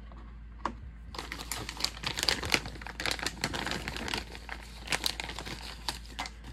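A plastic bag and tissue-paper wrapping crinkling as a hand rummages through them, a dense run of irregular crackles starting about a second in, after a single light click.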